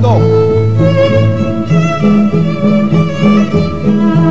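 Instrumental opening theme music with bowed strings: sustained melody notes over a moving bass line, starting as the show goes on air.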